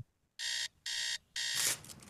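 Three short electronic beeps, like an alarm clock's, evenly spaced about half a second apart. A whoosh of noise rises near the end.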